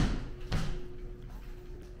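A single thud about half a second in, then quiet room tone with a faint steady hum.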